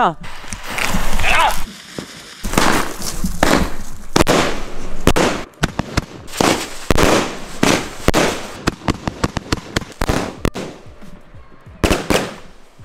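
Consumer firework battery (cake) firing, a rapid series of shots about one every half second to a second, with crackle between them, for roughly eight seconds before it dies away.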